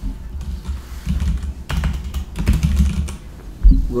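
Typing on a computer keyboard: a quick run of keystrokes, then one louder knock near the end.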